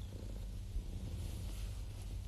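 A domestic cat purring, low and steady, while a hand strokes it.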